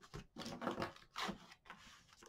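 Hands sliding a paper page down into a paper pocket of a handmade mini book and smoothing it flat: a few short, dry paper rubs.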